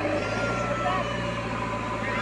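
JCB backhoe loader's diesel engine running steadily while its front bucket pushes loose soil, with people's voices over it.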